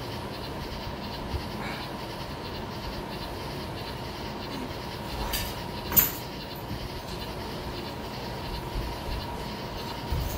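Steady background hum and hiss with a faint constant tone, broken by a few light clicks and one sharp click about six seconds in.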